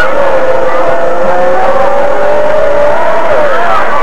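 Football stadium crowd holding one long, slowly rising yell of many voices as the kickoff is made.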